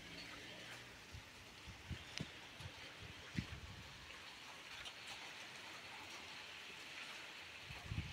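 Faint, steady hiss of light rain, with a few scattered drip-like taps.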